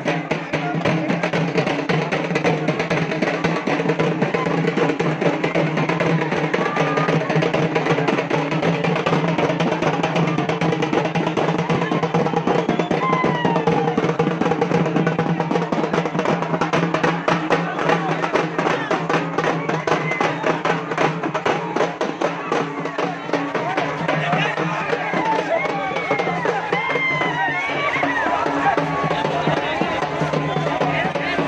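Drums beaten fast and densely over a steady held musical tone, with crowd voices and shouts rising toward the end.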